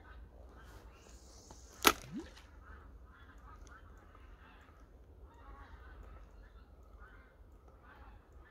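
A cast with a spinning rod: the line hisses off the reel spool for about a second, then a single sharp snap as the reel's bail closes, followed by a short rising squeak. After that only faint handling and water sounds.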